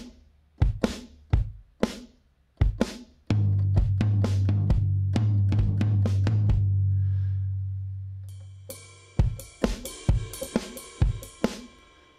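UJAM Virtual Drummer BRUTE's sampled rock drum kit, its single sounds (kick, snare and others) triggered one hit at a time. A long low tone holds under the hits from about three seconds in, fading out by about nine seconds. A cymbal rings over further hits near the end.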